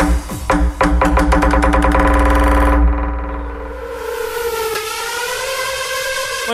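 Loud electronic club music from a DJ set over the club sound system: heavy bass under a fast run of drum hits that gets denser for nearly three seconds, then the bass and beat cut out, leaving a sustained synth tone that wavers up and down in pitch.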